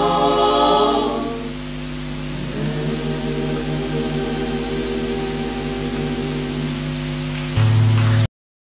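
A women's vocal group singing a traditional Bay of Kotor song a cappella, the voices moving for the first second or so and then settling on a long held final chord. Near the end a loud low hum comes in abruptly.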